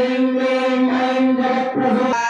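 A voice chanting a Hindu mantra in long, steady held tones, the pitch shifting slightly about a second in and again near the end.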